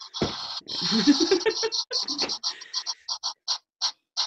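Spin-the-wheel app on a phone ticking as its wheel spins: rapid ticking in the first half that slows into separate clicks spaced further and further apart as the wheel winds down. A brief voice sounds over the fast ticking.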